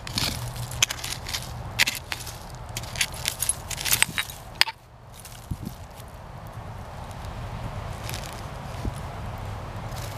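Hand digging tool scraping and knocking into root-filled dirt around a buried glass bottle, in a quick, irregular run of scrapes and clicks. About halfway through it stops suddenly, and only a few faint sounds follow as the bottle is worked loose by hand.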